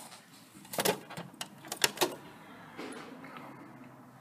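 Hotpoint Aquarius WMA54 washing machine on a spin it cannot get going on: a cluster of sharp clicks and knocks about a second in, then a low steady hum. The owner thinks the motor bushes or the motor have gone.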